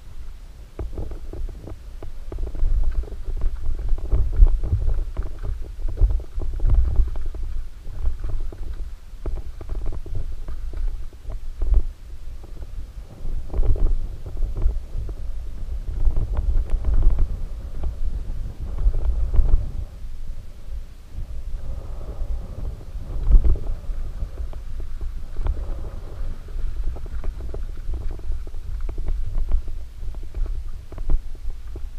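Mountain bike descending a rough dirt singletrack, heard as a muffled, low rumble of tyres and frame over the ground with frequent irregular jolts from bumps and rocks. It is recorded through a defective GoPro whose audio is muffled.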